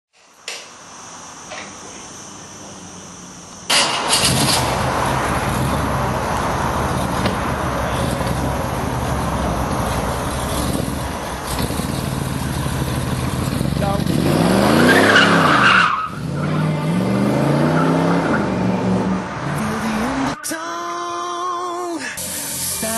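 A car engine revving over loud, rushing noise that starts suddenly a few seconds in. The engine rises and falls in pitch twice in the second half.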